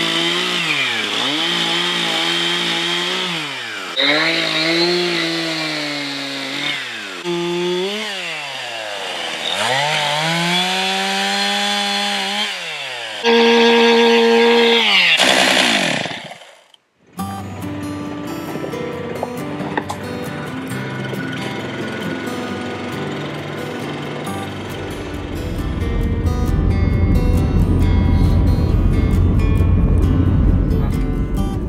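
Stihl chainsaw engine running, its pitch rising and falling again and again as the throttle is worked, with a louder, higher stretch near the end. It stops suddenly about 16 seconds in, and acoustic guitar music follows.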